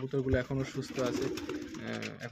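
Domestic pigeons cooing in a loft.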